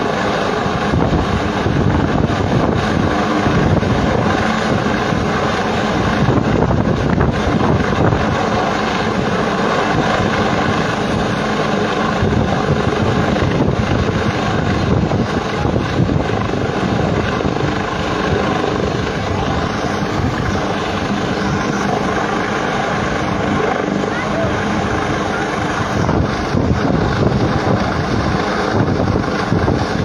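Military helicopter hovering, its rotors and engine making a steady, continuous noise.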